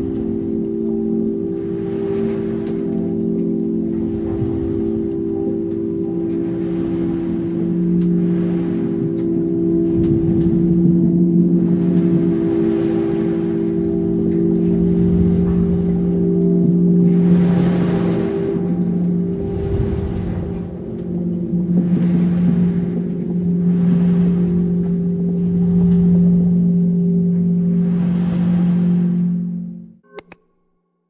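Ambient intro music: a sustained low drone of steady held tones, with washes of hiss swelling and fading about every two seconds over it. It drops away right at the end.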